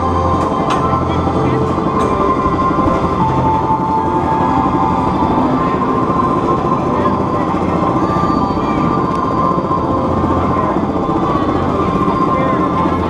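Manta flying coaster train being hauled up its chain lift hill: a steady mechanical rumble with a continuous whine, and a few sharp clicks in the first couple of seconds.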